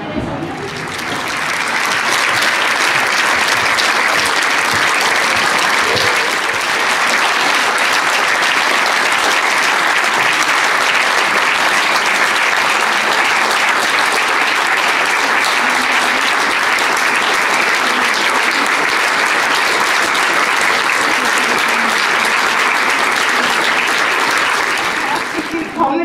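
Audience applauding steadily, swelling in over the first couple of seconds and dying away near the end.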